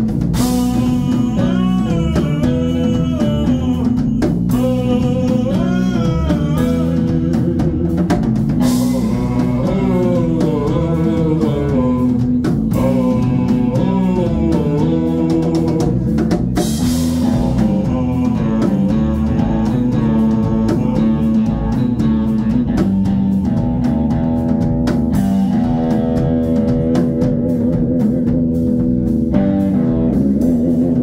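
Live band playing: a Stratocaster-style electric guitar, an electric bass guitar and a drum kit, with a lead line that bends up and down in pitch through the first half and settles into steadier repeated notes later. Recorded on a phone in the room.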